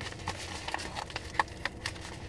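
A padded mailer and its contents being handled by hand: a string of light irregular clicks and taps, the sharpest about one and a half seconds in, over a low steady hum.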